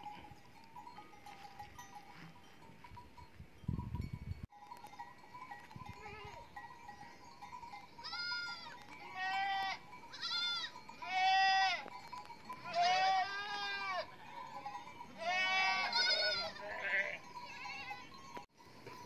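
A flock of sheep bleating, about eight bleats in a run from about eight seconds in, some overlapping. Earlier there is a brief low rumble about four seconds in.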